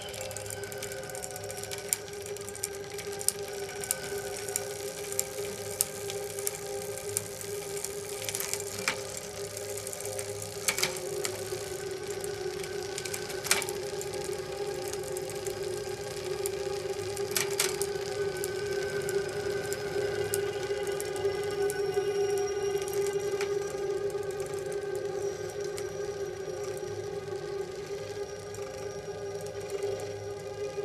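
Acousmatic electroacoustic music (musique concrète): a steady, held drone with fainter sustained tones above it, sprinkled with sharp clicks and crackles, a few of them louder. The whole swells slightly past the middle.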